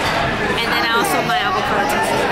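Speech: a woman talking over the background chatter of a busy restaurant dining room.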